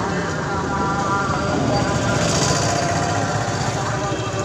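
Indistinct voices over steady street noise, with a vehicle engine running.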